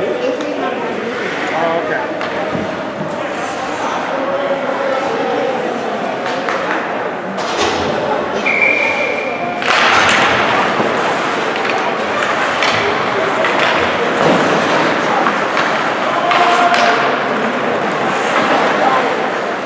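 Ice-hockey arena ambience: indistinct chatter from players, benches and spectators, with scattered knocks of sticks and pucks. A single steady high tone sounds for about a second just before the middle. Right after it the overall noise rises as play restarts from the faceoff.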